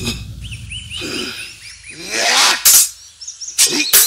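Small birds chirping in short repeated calls, then a rising whoosh of a swung blade and sharp hits in the sword fight, the loudest about two-thirds of the way through and a few more near the end.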